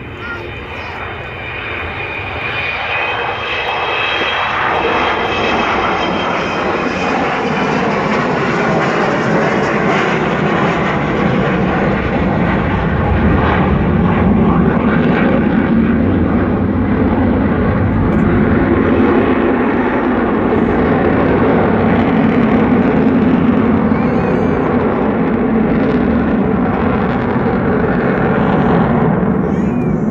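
Avro Vulcan's four Rolls-Royce Olympus turbojets as the delta-wing bomber flies toward the crowd on approach with gear down. It starts with a high whine, and over the first few seconds the sound builds into a loud, steady jet roar that holds to the end.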